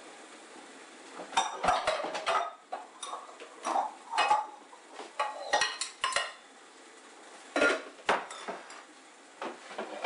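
Mixing bowls and metal kitchenware clattering and clinking as dishes are handled: a run of irregular knocks and clinks, some ringing briefly, with a short pause just before the last few, ending about eight seconds in.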